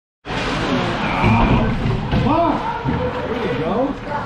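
Ice hockey play heard from rinkside: skates scraping the ice under many spectators' voices shouting at once in the rink.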